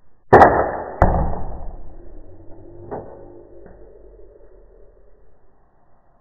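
Slowed-down slow-motion audio of a Star Wars Wookiee bowcaster Nerf blaster firing its dart, pitched deep: a sudden release hit, a second hit under a second later, then a long fading rumble with a faint low hum and two small clicks.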